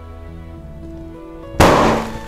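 A 24-inch black latex balloon, stretched over a clear Anagram Crystal Clearz balloon, pricked with a fine pin and bursting: one loud bang about a second and a half in. The outer latex pops while the inner clear balloon stays whole, over steady background music.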